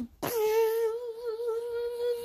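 A child humming one long held note that wavers a little at first, then holds steady.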